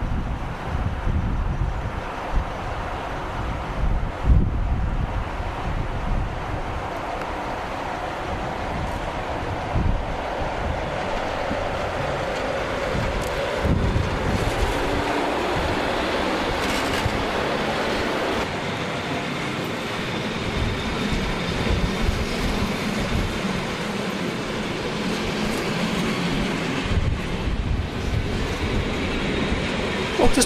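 NS 1200-class electric locomotive 1217 pulling away from the platform with an intercity train and running past close by, followed by its coaches. Steady rumble of the locomotive and wheels on rail, with occasional knocks.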